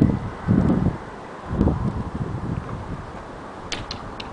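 Wind buffeting the microphone in uneven gusts of low rumble, with a few short clicks near the end.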